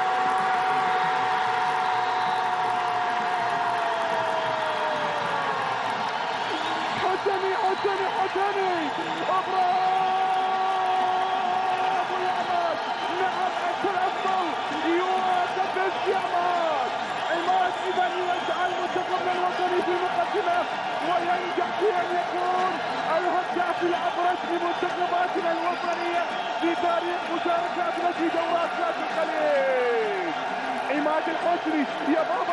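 A TV football commentator's goal call: one long held shout on a single note that slides down in pitch about five seconds in, over steady stadium crowd cheering. From about seven seconds on come more long, wavering held vocal calls over the cheering crowd.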